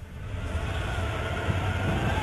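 Film-trailer soundtrack: a deep, steady rumble with a rushing roar over it, building up in the first half second.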